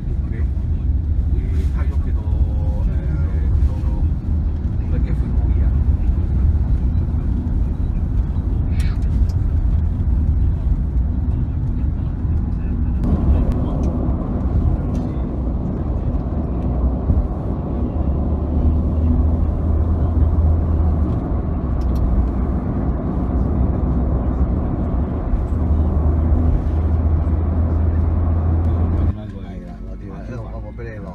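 Steady low engine and road rumble heard from inside a moving bus, growing noisier with more tyre and road hiss about halfway through; it cuts off abruptly near the end.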